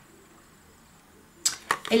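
Quiet room tone, then two or three sharp clicks about one and a half seconds in, and a woman starts to speak near the end.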